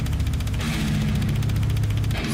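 Slam death metal instrumental passage with no vocals: fast, even drum hits over a low, heavily distorted guitar riff.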